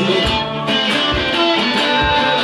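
Live band music, an instrumental stretch without vocals led by a metal-bodied resonator guitar being strummed and picked, with a steady low beat underneath.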